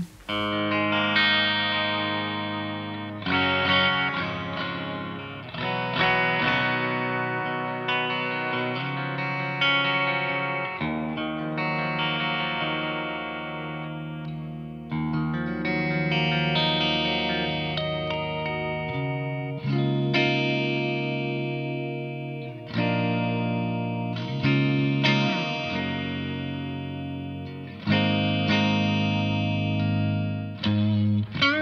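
Chapman ML1 Modern Storm Burst electric guitar with coil-split Seymour Duncan Pegasus and Sentient humbuckers, played through a Victory Kraken rig on a clean channel with reverb and delay: chords strummed and left to ring, a new chord every two to three seconds. It starts on the split bridge pickup, whose tone is thin and loses volume, and moves to the split middle position partway through.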